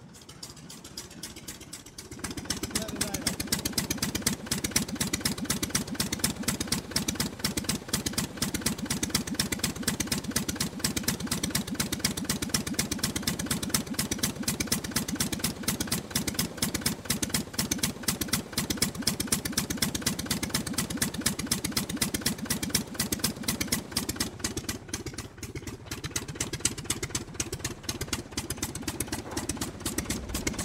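Aircraft piston engine running steadily, a fast even stream of firing pulses. It comes up about two seconds in after a quieter start and eases briefly near the end.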